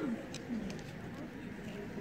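A dove cooing: two low, falling coos in the first half-second or so, over faint background voices and a few light clicks.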